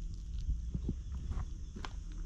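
Wet mouth clicks of someone biting into and chewing a fresh fig close to the microphone: a few soft, irregular clicks over a low wind rumble.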